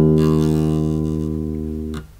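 Electric bass holding a single plucked low note, E at the second fret of the D string, ringing and slowly fading, then damped off sharply at the end.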